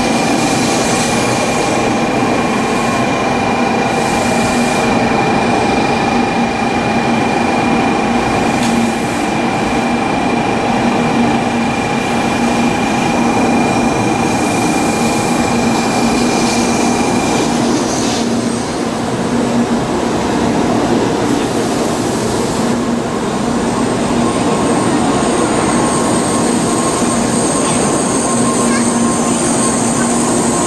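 Shinkansen bullet train moving along the platform: loud, steady running noise with a whine in several steady tones. About eighteen seconds in the whine shifts and its highest tone drops out, and a thin high squeal comes in from about twenty-three seconds.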